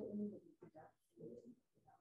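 A person's voice, faint and brief: the tail of a spoken "huh?" and then a few quiet, indistinct words.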